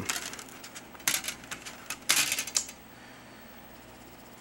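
Thin metal electrolysis-cell plates clinking and scraping against one another as they are handled, in a few short clusters of sharp metallic clicks over the first three seconds.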